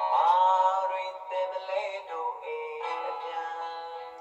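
Recorded song playing back: a male voice singing a slow, held melody that slides between notes, thin-sounding with no bass.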